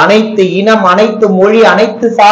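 Speech only: a man talking without a pause.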